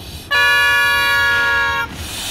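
A loud, steady horn-like blast of several tones sounding together. It starts about a third of a second in, holds for about a second and a half and cuts off abruptly.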